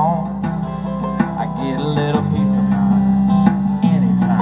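Live acoustic country music: two strummed acoustic guitars with a mandolin picking notes over them, playing steadily without a pause.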